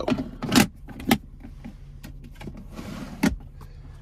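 Plastic sliding tray in a pickup's center console being set back on its tracks: a short sliding scrape about half a second in, then a sharp click, and another click near the end.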